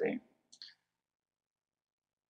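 A spoken word ends, then a single faint short click, then silence.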